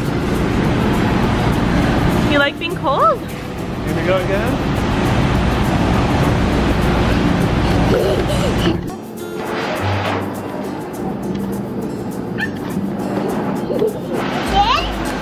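Background music playing steadily, with a young child's brief high squeals and calls over it a few times.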